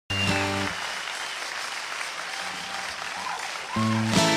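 Audience applauding and cheering, with a few whistles, after a brief chord at the very start. About three-quarters of the way through, a steel-string acoustic guitar starts strumming.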